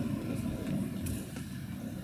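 Futsal hall ambience: a steady, deep, echoing rumble of room noise, with a short knock at the start and another about a second in.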